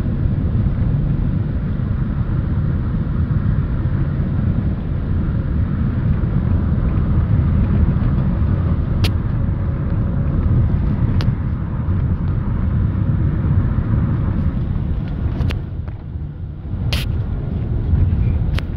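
Steady low rumble of a car driving along a road, heard inside the cabin: engine and tyre noise, with a few brief clicks in the second half.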